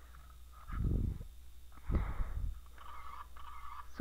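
Handling noise from a small plastic toy phone being turned over in the hand: two muffled, dull bumps about a second apart, with faint rubbing between them.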